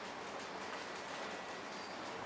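Quiet room tone: a steady, faint hiss with no distinct event.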